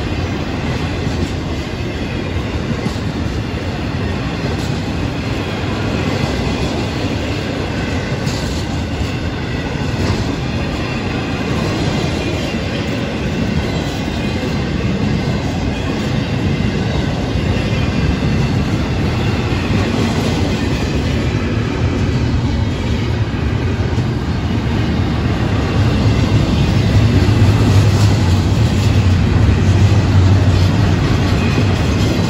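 Intermodal freight cars of a Florida East Coast Railway train rolling past close by: the steady running noise of steel wheels on the rails with a light clickety-clack. It grows louder near the end as the double-stack well cars go by.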